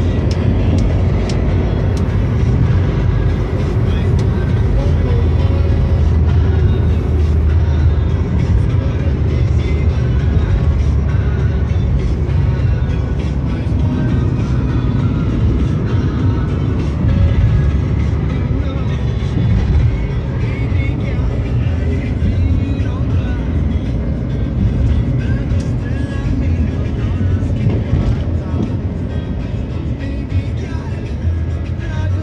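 Steady low road and engine rumble inside the cabin of a moving Toyota car, with music playing over it.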